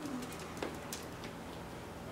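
A drawn-out, low voice trails off and fades right at the start, then the classroom is quiet, with room tone and a few faint clicks like small movements.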